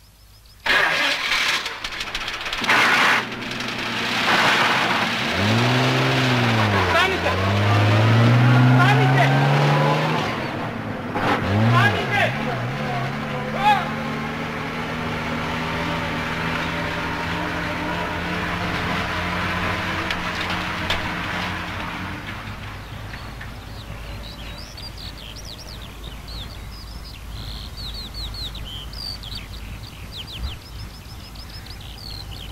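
An old bus engine starting suddenly and revving up and down a couple of times, then running steadily as the bus pulls away, fading out. Birds chirp near the end.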